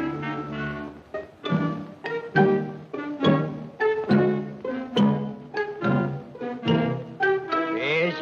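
Orchestral film score: a held chord, then from about a second and a half in, a run of short accented notes at an even pace of about two a second.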